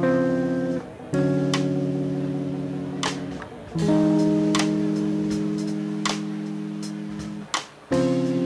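Small live band of keyboard, guitar and drums playing a slow, jazzy instrumental. Long held chords change three times, with a light sharp drum hit about every second and a half.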